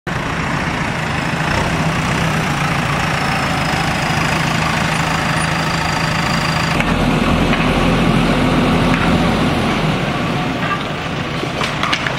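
JCB backhoe loader's diesel engine running steadily as the machine drives. About seven seconds in, the engine note changes abruptly and turns deeper.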